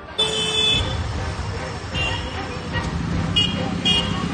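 Roadside traffic noise with several short vehicle horn toots, one in the first second, one about two seconds in and two near the end, over voices in the street.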